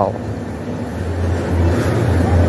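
Steady low rumble under a wash of background noise, the ambience of a large indoor shopping mall, growing a little louder about a second in.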